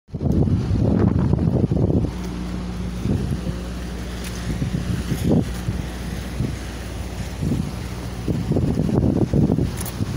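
Wind buffeting the phone's microphone in strong gusts near the start and again near the end, over the steady low hum of a pickup truck's engine idling.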